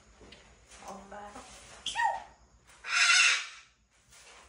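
African grey parrot vocalising: soft voice-like mumbling about a second in, a short loud sliding whistle-like call at about two seconds, then a loud harsh squawk lasting under a second near three seconds.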